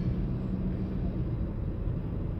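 Steady low road and engine rumble of a moving car heard inside the cabin, with a faint hum that fades after about the first second.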